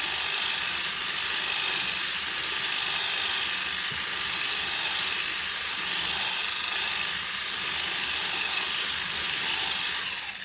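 Electric mixer running at a steady speed, whipping egg whites in a bowl; the whir stays even throughout.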